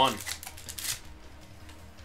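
Baseball trading cards and their paper pack wrapper rustling as the cards are pulled out of an opened pack. A quick run of crackly rustles comes in the first second, then it dies down to faint handling.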